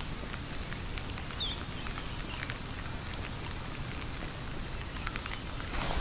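Outdoor ambience on an open field: a steady low rumble with faint scattered ticks, and one short high chirp about one and a half seconds in.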